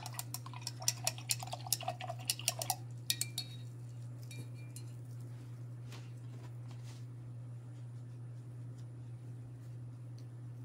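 A paintbrush being rinsed out in a cup of water, clinking and rattling rapidly against the inside of the cup for about three and a half seconds, then stopping. A steady low hum runs underneath, with a few faint ticks later on.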